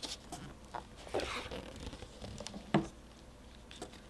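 Hands sliding over a hardcover picture book and opening its cover, with small rubs, taps and rustles and one sharper knock nearly three seconds in.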